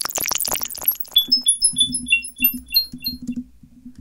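Synthesized sapf patch playing: short decaying sine-tone pings at randomly jumping pitches, several a second, with comb-delay echoes, over a low pulsing tone. The first second is a dense run of clicks, and the pings stop about three and a half seconds in.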